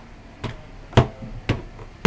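Footsteps climbing stairs: three thuds about half a second apart, the loudest about a second in.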